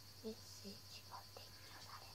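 Faint, brief voices, like quiet murmured or whispered words, over a steady low hum.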